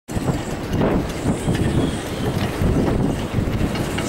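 Gusty wind buffeting the microphone: a loud, low rumble that swells and dips with the gusts.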